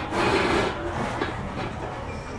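Cloth rustling and scraping against a phone's microphone as it brushes a denim shirt, loudest in the first half-second or so.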